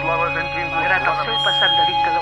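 Several voices talking at once, in the manner of overlapping radio news reports, over a few steady sustained electronic tones.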